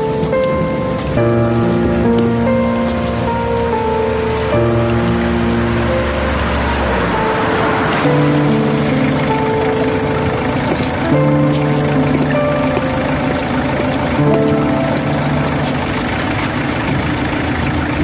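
Steady rain falling on wet pavement under slow music of long held notes that change every second or so.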